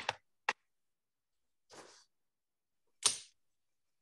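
A few sharp ticks and taps with a faint rustle between them: a paper reference print being handled and moved over the table.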